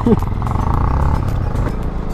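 Motorcycle engine running as the bikes pull away. A steady low rumble, with a higher drone for a moment about half a second in.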